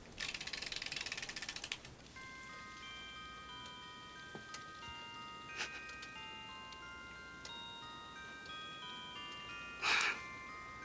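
A crib mobile's wind-up music box is wound with a quick ratcheting rattle, then plays a slow, tinkling melody of clear notes that ring on and overlap. A few soft knocks come through the tune, the loudest near the end.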